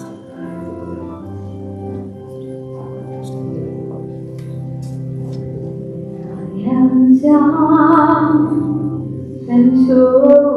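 Organ chords played softly and held, then a woman's solo voice begins singing over them about two-thirds of the way in, much louder than the organ: the start of a communion hymn.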